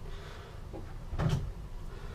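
A single brief clunk of something being handled, about a second in, over faint room noise.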